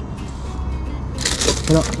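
Rustling of gear being handled, starting a little past halfway, over a steady low hum.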